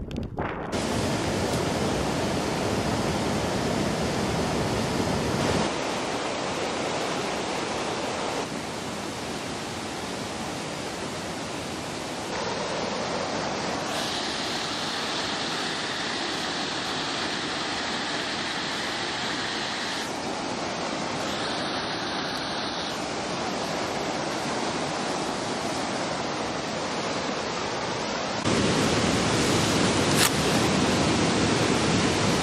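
Steady rushing outdoor noise of wind and running water on the microphone. Its tone and loudness change abruptly several times as one shot cuts to the next.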